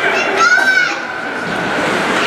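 Children shouting and calling in high voices over background crowd chatter, the loudest a drawn-out call about half a second in.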